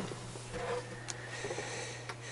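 Faint handling of a laptop LCD panel as it is set down on the work surface, with a light tap about a second in, over a steady low hum.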